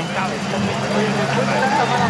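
Background voices of people talking, with a steady low hum underneath.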